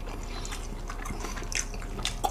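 Close-miked mouth sounds of eating cold bibim-myeon noodles: soft, wet slurps, smacks and chewing, heard as scattered short clicks.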